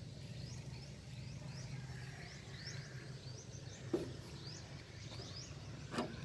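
Small birds chirping in short rising calls, a few a second, over a faint low steady hum; a single knock about four seconds in.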